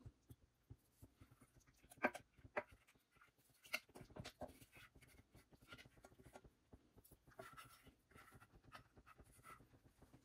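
Near silence with a few faint clicks and soft scrapes from stainless-steel pans as thick cheese sauce is poured from a saucepan into a pot of pasta and peas.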